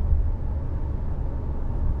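Steady low rumble of road and engine noise inside the cabin of a 2021 Tata Safari diesel automatic SUV while it is being driven.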